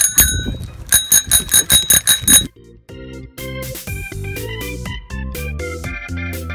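A handlebar dome bicycle bell rung once, then flicked in a quick run of about eight rings lasting a second and a half. After that, background music with steady chords takes over.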